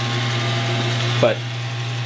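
Teletype Model 33 ASR running idle: a steady motor hum and whir with no printing clatter.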